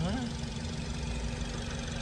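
Nissan Grand Livina's 1.8-litre four-cylinder engine idling with the hood open: a steady, even low hum.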